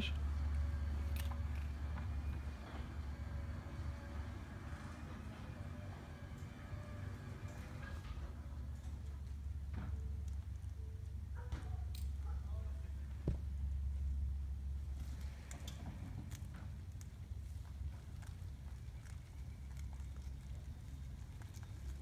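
Garage door opener running as the sectional garage door rises, a faint steady hum that stops about eight seconds in; then the Tesla Model S rolls out slowly on electric power, barely audible, with a few light clicks. A steady low rumble underlies it all.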